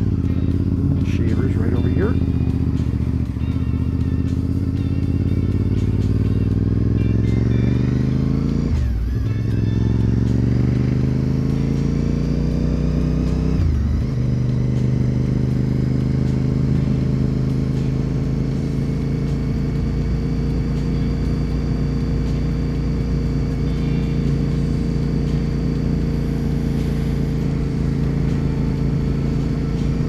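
Honda RC51's 1000cc V-twin engine accelerating hard out of a corner, its pitch climbing through the gears with two upshifts, each a sudden drop in pitch, about a third of the way in and near the middle. After that it settles to a steady cruise.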